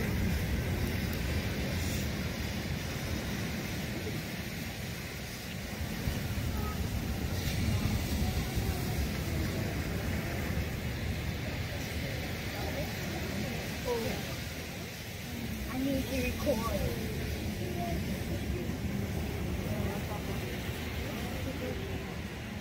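Steady rush of surf and wind, with the low voices of people murmuring nearby now and then.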